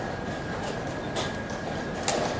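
Steady background hiss of a tournament playing hall with a thin constant high tone, and a couple of soft clicks about halfway through.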